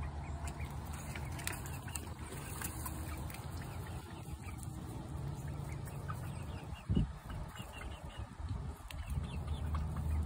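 Backyard hens clucking softly while pecking at apple scraps in straw, over a steady low wind rumble on the microphone. A single thump about seven seconds in.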